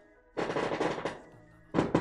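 Fireworks going off: a rapid string of loud bangs in quick succession starting about a third of a second in and lasting under a second, then a second loud burst of bangs near the end.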